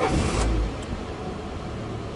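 Title-sting sound effect: a rush of noise with a deep boom in its first half second, then easing to a steady rush.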